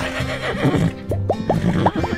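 Upbeat background music, with a horse's whinny, a quick run of short rising pitch wavers, over its second half.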